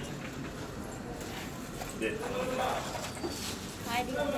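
Indistinct voices over a steady low background, clearest in the second half.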